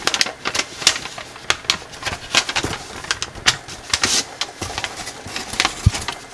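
Thin gold foil origami paper crinkling and crackling in the hands as it is creased and folded, a fast irregular run of crisp crackles. A duller knock comes near the end.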